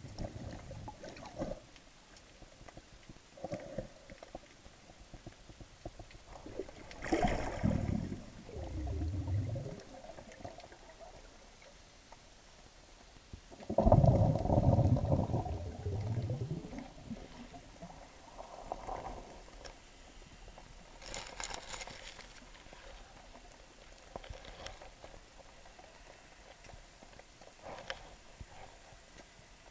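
Underwater sound picked up through a sport camera's waterproof housing: low rumbling, gurgling rushes of water and bubbles, one about a quarter of the way in and a louder one about halfway, with lighter crackling bursts later.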